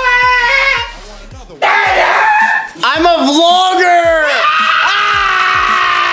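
Men screaming in long, wavering, high-pitched yells over music with a deep kick drum about twice a second.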